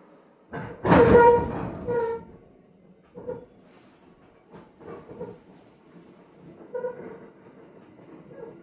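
Commuter electric train heard from inside the passenger car as it slows into a station. A loud pitched tone comes about a second in and lasts about a second and a half. Shorter, fainter tones follow at intervals over the train's rumble.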